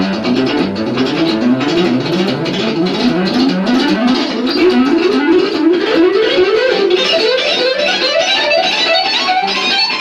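Electric guitar playing a fast E minor scale lick in groups of six notes that climbs the neck, each group starting one step higher in the scale. In each group the first note is picked, the next two are hammered on, and the last three are picked.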